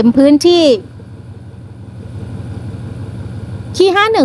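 A steady low rumble of a diesel train engine idling, growing slightly louder, between short bursts of a woman's voice.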